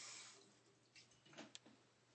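Bathroom sink tap running, then shut off about half a second in, leaving a few faint clicks.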